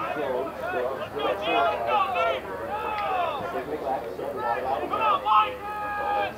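Several men's voices talking and calling out over one another: football players and coaches chattering along the sideline.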